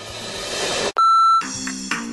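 A transition sound effect: a rising whoosh swells for about a second and cuts off suddenly, followed by a short high beep, then music begins.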